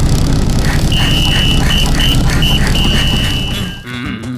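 Cartoon soundtrack: a loud, steady low rumble with a single high tone above it, starting about a second in and breaking off into long and short pieces.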